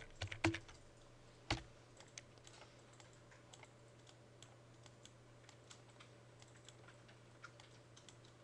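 Faint computer keyboard typing and mouse clicks: a couple of sharper clicks in the first two seconds, then sparse light taps, over a steady low hum.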